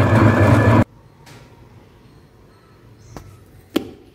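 Tabletop wet grinder running with a steady low motor hum while grinding soaked urad dal into idli batter. The hum cuts off abruptly about a second in. Two short light knocks follow near the end, the second louder.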